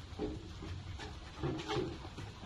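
Short strained grunts and calls from movers pushing a heavy piano dolly, several brief bursts with the longest about one and a half seconds in, over a steady low rumble.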